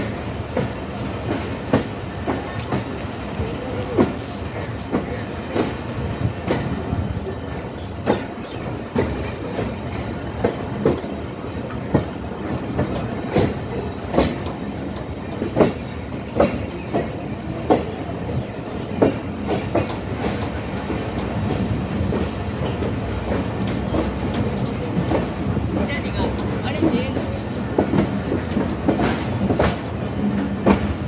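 Passenger train coaches running along the track, heard from an open coach door: a steady rumble with sharp clacks of the wheels over rail joints every second or so, growing a little louder in the second half.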